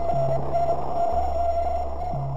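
Electronic background music: sustained low synth bass notes that shift pitch about a second in, under a steady, slightly wavering high tone and a hiss like radio static.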